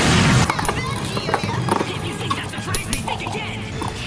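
Two metal-wheeled Beyblade tops spinning and clashing in a plastic stadium: a rapid, irregular run of sharp clicks and clacks as they strike each other and the walls. A loud rushing noise cuts off about half a second in, and music runs underneath.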